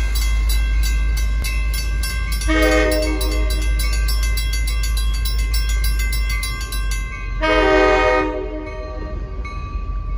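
Horn of MBTA switcher locomotive 1119 sounding two short blasts at a grade crossing, about two and a half seconds in and again near the end, the second the louder. Under it, the crossing bells ring rapidly and stop just before the second blast, over a steady low rumble.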